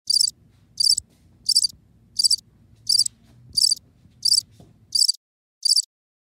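Insect chirping, cricket-like: nine short, high chirps, about one every 0.7 seconds, over a faint low hum that stops about five seconds in.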